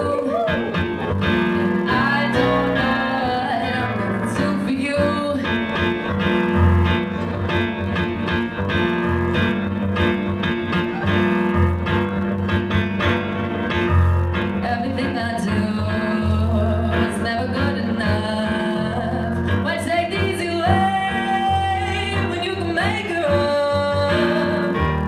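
Live music: a woman singing her own song while accompanying herself on keyboard, with sustained chords under a wavering sung melody.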